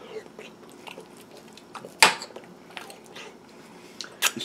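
A metal fork working through soft braised venison on a plate, with faint chewing and small soft clicks. One sharp click of the fork against the plate comes about two seconds in.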